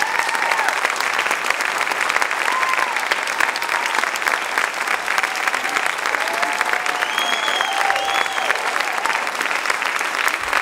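Concert audience applauding steadily after a jazz band's final number, with a few cheers and whoops rising over the clapping about seven to eight seconds in.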